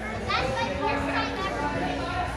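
Children's voices: overlapping chatter and calls, with one high child's shout about a third of a second in.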